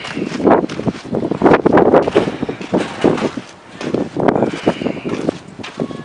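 Gusty wind buffeting the microphone in irregular loud bursts, mixed with rustling and knocks from the camera being carried and footsteps.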